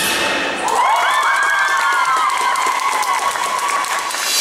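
Audience applauding and cheering as the salsa music stops, with high-pitched cheers held over the clapping for about three seconds.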